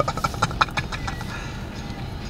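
A brief laugh at the start, then the low, steady rumble of a car's engine heard from inside the cabin.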